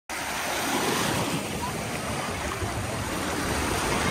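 Sea surf washing on a shore, a steady rushing noise that starts abruptly.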